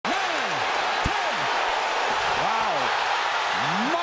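Steady arena crowd noise from a boxing broadcast, with a man's voice calling out over it and one thump about a second in.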